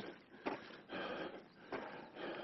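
A hiker breathing hard after a strenuous climb: a few faint, short, breathy puffs in an irregular rhythm.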